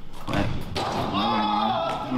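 A thud, then a person's voice calling out one long, drawn-out word.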